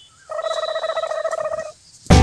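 A dog vocalising in play: one whiny, buzzing call at a steady pitch, lasting about a second and a half and stopping abruptly.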